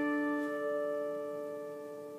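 The song's final strummed chord on a dulcimer ringing out, several notes sustaining together and slowly fading away.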